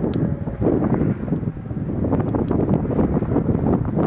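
Strong wind buffeting the microphone, a heavy low rumble with scattered crackles that drowns out the siren.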